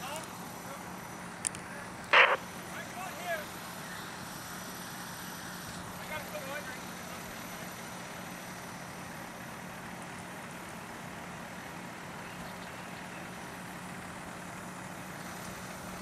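A fire engine running at the fire scene, heard as a steady low hum and hiss. There is a short sharp crack about two seconds in, and faint distant voices.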